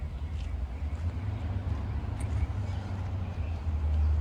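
A steady low rumble, with a few faint ticks over it.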